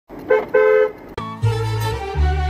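Two car horn honks, a short one and then a longer one. A little over a second in, music starts with a steady low bass note and a fiddle-like melody, Bulgarian folk music.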